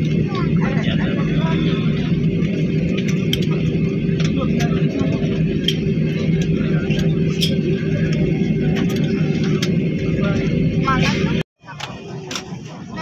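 Inside the cabin of an Airbus A320-family airliner taxiing after landing: the jet engines' steady drone with a low hum and a steady higher tone, with passengers' voices over it. It cuts off suddenly near the end, and a much quieter cabin with voices follows.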